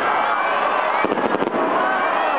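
Aerial firework shell bursting, its stars crackling in a quick run of sharp pops about a second in, over a crowd of many voices talking and calling out.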